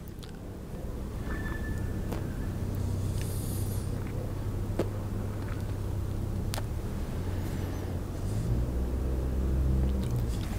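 Steady low motor rumble that grows a little louder near the end, with a few faint clicks.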